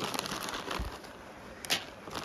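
Plastic bag of feed pellets rustling and crinkling as it is handled, with a soft thump about a second in and a sharp click near the end.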